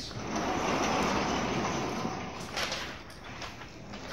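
A lasting scraping rumble at the lecture-hall blackboards for about two seconds that then fades, followed by a few brief scrapes.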